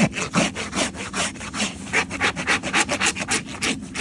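Farrier's hoof rasp filing a horse's bare hoof in quick back-and-forth scraping strokes, about three a second.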